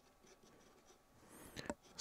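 Faint scratching of a pen writing on paper in short strokes, with a brief louder sound near the end.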